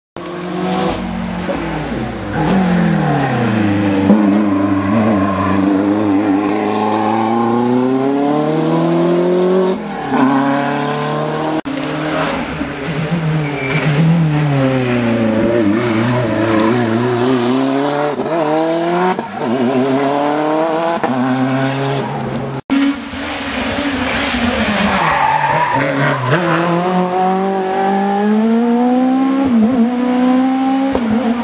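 Rally cars' engines revving hard through a bend on a tarmac stage, the pitch climbing and falling again and again with throttle and gear changes as each car passes. The sound comes from several passes cut together, breaking off abruptly two or three times.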